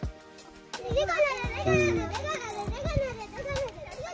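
Children's high-pitched voices calling out and chattering, starting about a second in, over faint steady background music.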